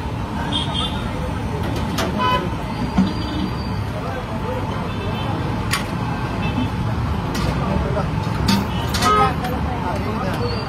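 Busy street ambience: a steady traffic hum with a few horn toots and background voices. A few sharp metallic clanks, some briefly ringing, come from steel milk cans and the brass pot being handled.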